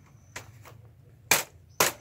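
Sharp cracks of split carrizo cane strips being worked into the basket's weave: a faint one early, then two loud cracks about half a second apart near the end.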